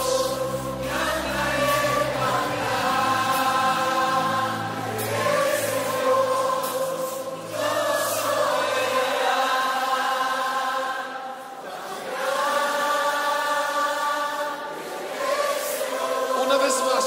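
Christian worship music: a group of voices singing long held notes together, each held a couple of seconds with short breaks between, over low bass tones that fade out partway through.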